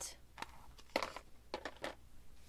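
A few brief, soft rustles and taps of paper and craft supplies being handled on a cutting mat, as a stamped paper label is picked up and an ink pad is set aside.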